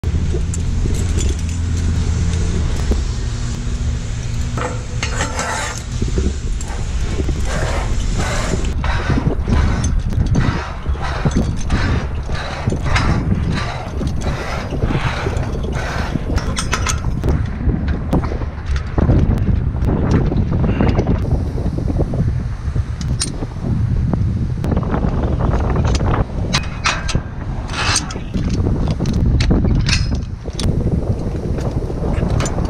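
A tower climber's metal gear, such as carabiners and lanyard hooks, clinking and clanking against the steel lattice of a communications tower during the climb, with wind rumbling on the microphone. A steady low hum runs under it for about the first eight seconds.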